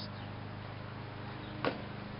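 Quiet outdoor background: a steady low hum, with one light click a little after halfway through.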